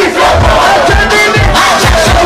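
A concert crowd shouting and singing loudly over live music. The heavy bass beat drops out at the start, leaving the massed voices on top.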